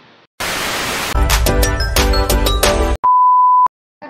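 A burst of hissing static, then about two seconds of loud music with a heavy bass beat, then a single steady high beep lasting about half a second that cuts off abruptly: edited-in sound effects marking a transition.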